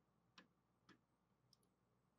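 Two faint computer mouse clicks about half a second apart, with a fainter third click a little after one and a half seconds in, over near silence.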